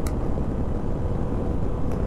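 Steady rush of wind over a helmet-mounted microphone mixed with the engine and tyre noise of a Triumph Tiger motorcycle running at about 135–150 km/h.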